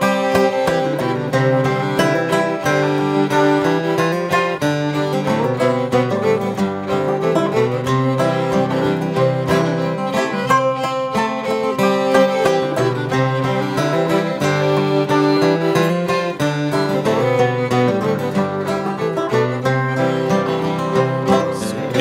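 Instrumental break of an acoustic western string band: fiddle bowing over strummed acoustic guitar and banjo, at a steady tempo with no singing.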